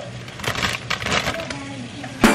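Irregular crackling and rustling, with faint voices behind it.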